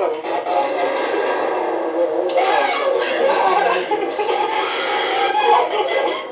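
People screaming and shouting over music in a haunted-house attraction, played back from a recording of a security-camera monitor.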